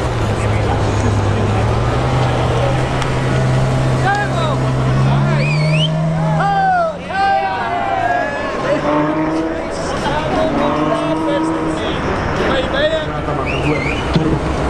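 Ferrari F12 V12 engine accelerating hard past the crowd. Its pitch climbs steadily for about six seconds, drops briefly about seven seconds in, then climbs again as the car pulls away.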